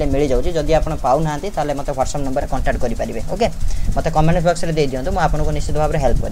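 A person's voice talking on without a break, explaining exam answers in Odia.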